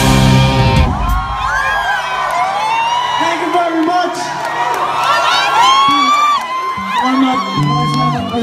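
A live rock band's last chord with electric guitar cuts off about a second in. Then an audience cheers, whooping and shouting.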